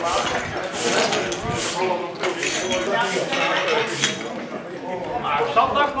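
Indistinct voices of people talking, with a few short, sharp clinks.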